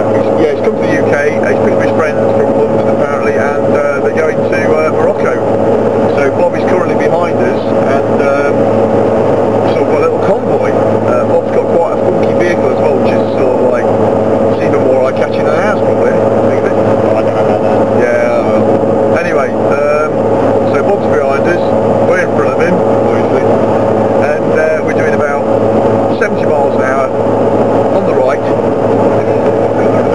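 Steady engine and road drone inside a Volkswagen Scirocco's cabin while cruising at a constant speed, with a constant humming tone running under the noise.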